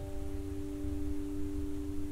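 A bell-like chime, struck just before, ringing on as a steady, slowly fading tone with fainter higher overtones over a low rumble.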